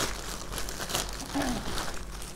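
A plastic courier bag and paper packaging crinkling and rustling in irregular crackles as they are handled and pulled open while gifts are unwrapped.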